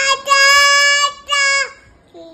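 A toddler boy singing in a high voice: one long held note for about a second, then a shorter note, after which the singing stops near the end.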